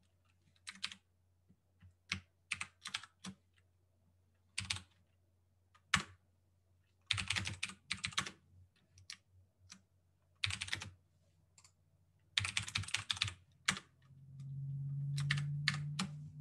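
Typing on a computer keyboard: short irregular bursts of keystrokes with pauses between them. A steady low hum comes in near the end.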